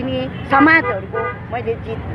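A woman talking into news microphones over a steady low rumble of street noise, with a short vehicle horn toot in the background near the start.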